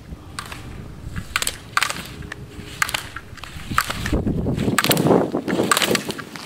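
Slalom skis scraping and carving on hard snow, growing louder as the skier nears in the last two seconds, with several sharp clacks from slalom gate poles being struck.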